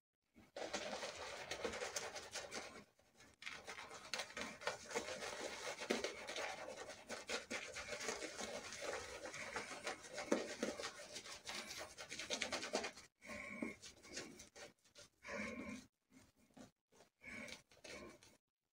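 Synthetic shaving brush scrubbing lather onto stubbled, wet skin: a continuous wet, brushy rubbing that breaks, after about 13 seconds, into shorter separate strokes with pauses between them.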